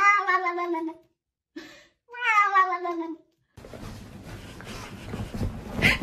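A wet cat being bathed yowls in protest: two long drawn-out meows of about a second each, sliding slightly down in pitch, with a short cry between them. The cries stop about three and a half seconds in.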